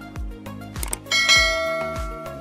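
Background music with a steady beat. About a second in, a bell chime sound effect from an animated subscribe-button overlay rings out and fades slowly, with a short click just before it.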